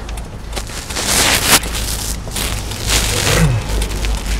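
Manual Kia truck's engine idling in neutral while stopped, a steady low hum. Over it are two bursts of rustling noise, about a second in and again near three seconds.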